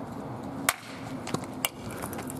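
A sharp whack about two-thirds of a second in, a pitched object being hit in a makeshift ball game, followed by two lighter clicks later on.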